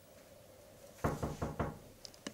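Four quick knocks, about five a second, about a second in, as of someone knocking on a door.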